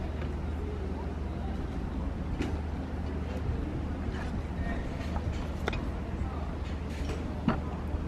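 Outdoor restaurant ambience: a steady low rumble with faint voices in the background, and a few light clinks as glasses are set down on a wooden table and cutlery is handled.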